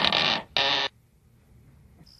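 Steel helmet visor being raised: a short, harsh metallic scrape in two parts within the first second, then near quiet.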